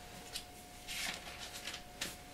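Soft rustling of thin Bible pages being turned by hand to find a passage, in a few short brushes, over a faint steady hum.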